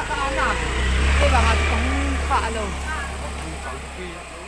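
Low rumble of a nearby motor vehicle's engine, swelling about a second in and then slowly fading, with people's voices over it.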